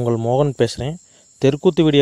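A man's voice speaking or chanting in an expressive, sing-song delivery, breaking off for a moment about a second in and starting again. A thin, steady high-pitched whine runs behind it throughout.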